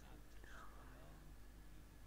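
Near silence, with faint, low speech in the background.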